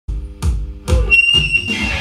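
Live rock band music from the first moments of a song: heavy low hits about every half second under held electric guitar chords, with a high sustained note coming in about a second in.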